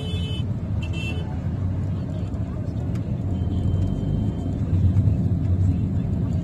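Steady low rumble of city traffic heard from inside a car crawling in a traffic jam, with a short high-pitched horn toot at the start and another brief one about a second in.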